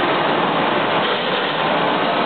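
Shoe-upper forming machinery running with a steady mechanical hum and noise.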